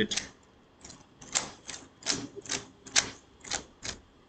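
Keys tapped on a keyboard: an irregular run of about a dozen sharp clicks.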